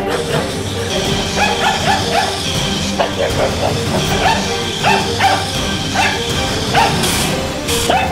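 Small dog barking and yipping in several short runs of quick barks, over background music.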